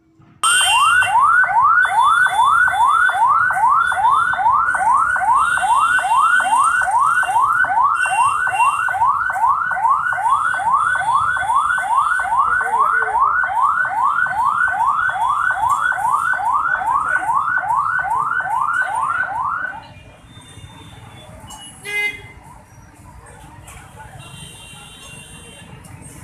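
Ambulance siren on a fast yelp, about two and a half rising sweeps a second, loud and steady, cutting off suddenly near the end. Street traffic noise follows, with a short horn blast shortly after.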